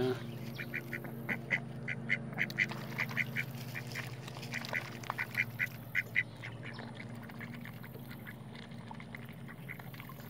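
Ducks calling at the water's edge while being fed: a run of short quacks, about three or four a second, that fades out after about six seconds. A steady low hum runs underneath.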